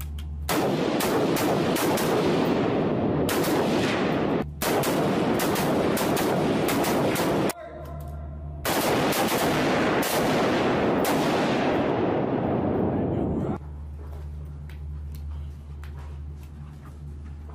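Several rifles firing together on an indoor range: rapid, overlapping shots that echo off the walls. The fire comes in three long strings, broken briefly about four and a half seconds in and again around eight seconds, and stops at about thirteen and a half seconds.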